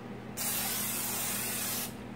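Aerosol cooking spray hissing in one steady burst of about a second and a half, misting oil onto the inside of an empty crock pot insert.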